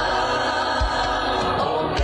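Choir singing with a steady low beat about once a second.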